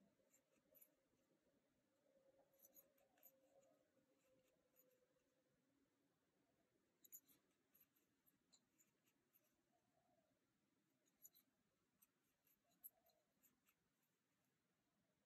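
Near silence, with faint small clicks and scratches in short clusters every few seconds: a metal crochet hook working cotton thread into single crochet stitches.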